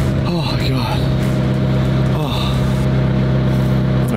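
Car engine running at steady revs, a constant low drone heard from inside the cabin, after a few short falling sweeps in the first second.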